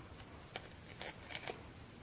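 Faint light clicks and paper rustles as small foam adhesive dots (dimensionals) are peeled from their backing sheet and pressed onto cardstock, about five soft ticks spread over two seconds.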